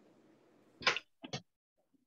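Three short sharp knocks picked up by a video-call microphone about a second in, the first the loudest, after a faint hiss that cuts off.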